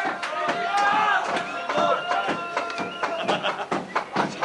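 Indistinct voices of several people talking over one another, with scattered short knocks.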